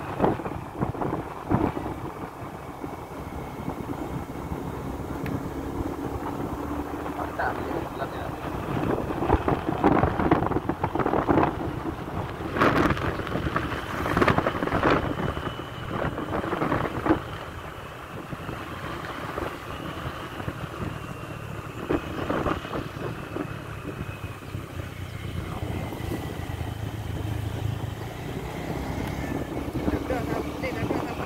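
Wind buffeting the microphone on a moving motorcycle, in irregular gusts, over the steady noise of the bike's engine and tyres on the road.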